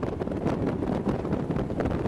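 Wind buffeting the microphone aboard a bass boat running fast across the lake, over the steady rush of the boat underway.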